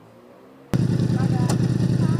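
Motorcycle engine idling close by, low and steady, coming in suddenly about three-quarters of a second in after a moment of quiet.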